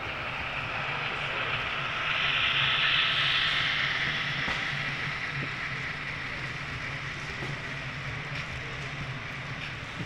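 HO scale model freight train, a diesel locomotive and its cars, rolling past on the track: a steady rolling hiss that swells about two seconds in and fades as the cars go by, over a low steady hum.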